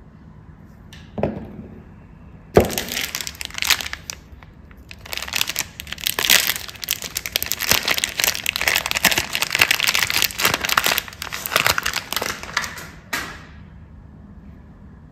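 Shiny soap wrapper crinkling and tearing as a bar of soap is unwrapped by hand, in dense crackles that start with a sharp snap about two and a half seconds in and stop shortly before the end. A single knock comes about a second in.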